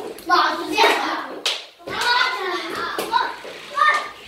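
Children's voices shouting and chattering excitedly, with no clear words, and one sharp click about one and a half seconds in.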